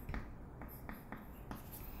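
Chalk writing on a chalkboard: a quiet run of short scratches and taps, one for each stroke of the letters.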